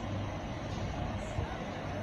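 Steady, indistinct noise of a large crowd: many voices and movement blended into a hubbub.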